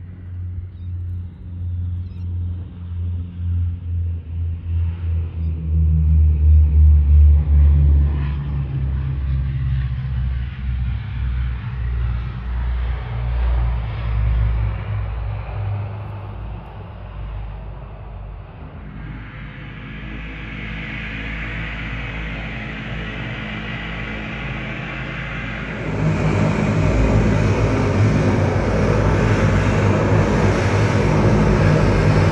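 Twin turboprop engines of a QantasLink Dash 8 Q300 during its landing roll and taxi. A loud, pulsing low rumble is loudest a few seconds in, then the sound fades somewhat. A rising high propeller whine and hiss builds as the plane taxis, and near the end it turns suddenly louder and closer.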